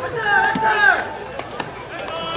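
High school baseball players shouting drawn-out calls during fielding drills, then two short, sharp knocks close together about a second and a half in.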